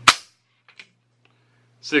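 A single sharp metallic snap as the AK rifle's factory trigger breaks under a trigger pull gauge and the hammer drops on an empty chamber, followed by two faint ticks. The trigger breaks at about six and a half pounds.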